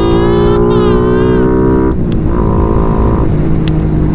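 Suzuki Satria F150 Fi (Raider Fi) single-cylinder four-stroke engine running under way, its note climbing steadily, then dropping in pitch about halfway through and settling into a lower steady drone, with wind rumble on the microphone.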